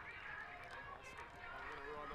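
Faint, indistinct voices of players and spectators carrying across an open sports field, with no commentary over them.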